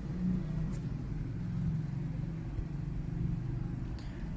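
A steady low rumble with no speech over it.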